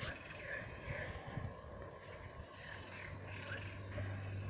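Faint outdoor background with a few short, high chirping calls scattered through it, over a low rumble.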